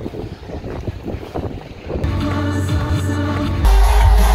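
Wind buffeting a phone microphone while inline skating on a street, with rough low rumbling noise. About three and a half seconds in, it cuts abruptly to loud live concert music with heavy bass, heard from within the crowd.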